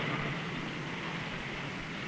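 A steady, even hiss, with faint low notes of a music cue dying away in the first half second.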